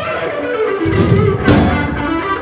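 Live blues-rock band playing: electric guitar lines over bass and drums. The bass and drums thin out at first and come back in just under a second in, with a sharp drum hit about a second and a half in.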